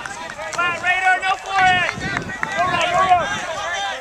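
Sideline players shouting encouragement during play: several long, high-pitched yells, strongest about a second in and again near three seconds.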